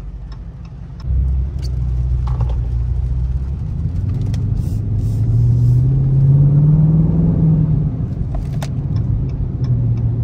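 Dodge Charger R/T's 5.7-litre Hemi V8 pulling away, heard from inside the cabin. The low engine note gets louder about a second in, climbs in pitch, and drops back near the end as the transmission shifts up. It is running in eco mode with the active exhaust valves closed.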